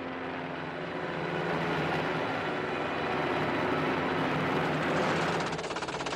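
Military helicopter in flight: steady rotor and engine noise that swells slightly. A fast, even pulsing sets in about five and a half seconds in.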